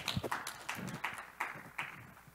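Audience applause, a patter of hand claps with a short laugh over it, dying away near the end.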